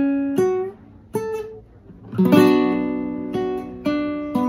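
Nylon-string classical guitar fingerpicked: single notes about half a second and a second in, then an E major chord about two seconds in that rings on, and another note near the end.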